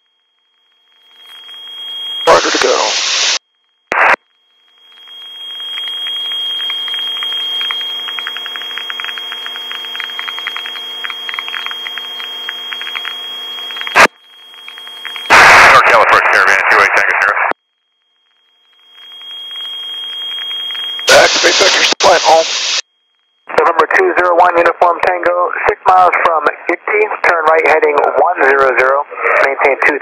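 Aircraft VHF radio heard through the intercom, cutting in and out as the squelch opens and closes. A steady high whine with a buzz under it is held for about a dozen seconds, broken by short bursts of static hiss. Near the end a controller's voice comes over the radio giving the final vector and approach clearance.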